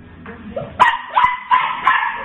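Puppy barking: four sharp, high-pitched barks in quick succession, about three a second, starting just under a second in.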